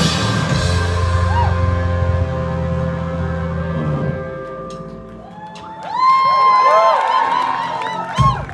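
Live rock band with electric guitars, bass and drums playing an instrumental passage. The full band with drums plays for about four seconds, then the drums drop out and held notes ring and fade. About six seconds in, sliding, wavering high notes swell up.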